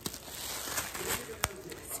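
Plastic bread bag crinkling as it is handled and opened, with a sharp click about a second and a half in.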